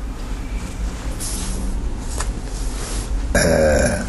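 Low, steady hum with faint room noise and two faint clicks during a pause in speech; a man's voice resumes near the end.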